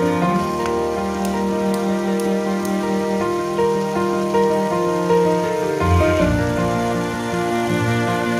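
Slow, soft background music with held notes, and a deeper bass line coming in about six seconds in. Under it is a faint hiss of meat masala frying in a pan, with a few light spatula clicks in the first three seconds.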